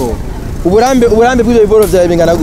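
A man speaking, starting about two-thirds of a second in and running on past the end.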